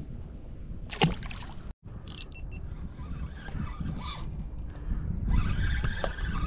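Steady low rumble of wind buffeting an action camera's microphone, with a short sharp noise about a second in and the rumble growing louder near the end.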